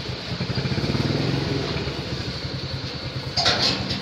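Small engine idling steadily with a low, pulsing rumble. A brief higher rasping sound comes near the end.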